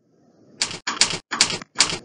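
Typewriter sound effect: a run of sharp, evenly spaced clacks, about two and a half a second, starting about half a second in.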